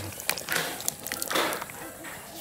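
Canned pinto beans sliding out of the can into a slow cooker: a few light clicks of the can, and two short wet slides of beans and liquid, about half a second in and again near one and a half seconds.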